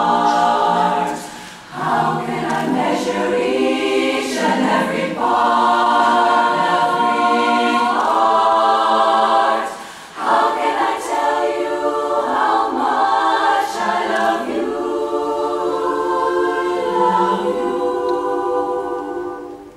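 Women's barbershop chorus singing a cappella in close harmony, sustained chords broken by two short breaths between phrases, one near the start and one about halfway through.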